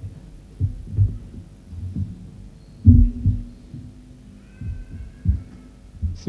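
Irregular dull, low thumps, about a dozen, picked up by the microphone, the loudest about three seconds in and followed by a short low hum.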